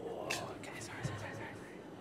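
Quiet, off-microphone murmured speech and whispering between people at a lectern, with a light knock about a second in.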